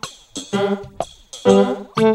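Instrumental break in a novelty R&B song: short, choppy chords about twice a second, with no singing.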